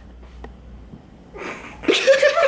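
Quiet room tone, then near the end a short, sharp breathy burst from a person that breaks into laughter.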